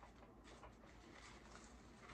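Faint rustling and light scuffing of artificial flowers, greenery and fabric ribbon being handled and pushed into a floral arrangement.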